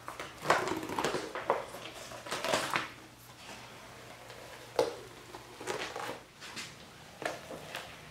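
Hardened epoxy resin being peeled off a rubber mat: irregular crackling and crinkling, busiest in the first three seconds, then a few scattered crackles.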